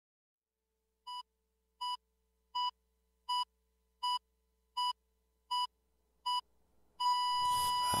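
Eight short electronic beeps of one pitch, evenly spaced a little under a second apart, the first ones softer. About seven seconds in, a steady tone of the same pitch starts and reversed hip-hop music and vocals fade in beneath it.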